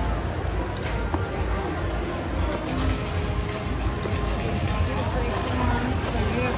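Casino floor ambience: background chatter and music over a steady low rumble, with high electronic tones coming in after about two and a half seconds.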